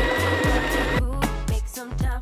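Background pop music with a steady beat.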